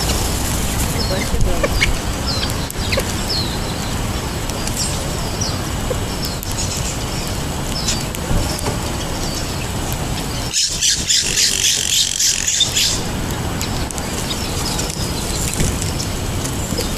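Small birds chirping with short high calls throughout, and a louder, rapid high-pitched chatter for about two seconds just past the middle, over steady low background noise.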